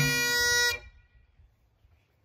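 Highland bagpipes ending a 2/4 march on a held note, with a final stroke on a tenor drum at the start. The pipes cut off suddenly after under a second.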